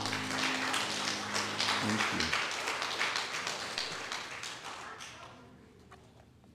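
A congregation applauding after a song, the clapping dying away over about five seconds. The last low notes of the music end about two seconds in.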